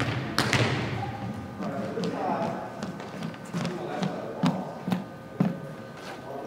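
Volleyballs being hit and bouncing on a hardwood gym floor: a scattered series of sharp thuds, several more than half a second apart, echoing in the large hall, with players' voices chattering in the background.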